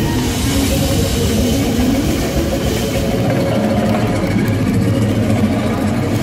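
Live flamenco-rumba band playing loud and steady, with nylon-string guitar and electric bass over drums. The low end is heavy.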